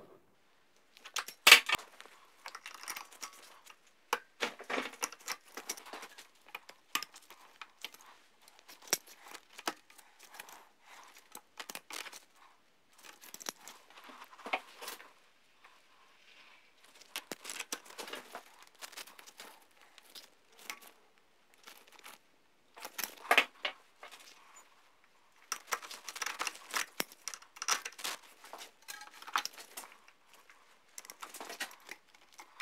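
Fantic trial motorcycle's rear drive chain and chain tensioner being handled and worked by gloved hands: irregular metallic clicks, rattles and scrapes in short clusters, with the sharpest click about a second and a half in and another near the middle.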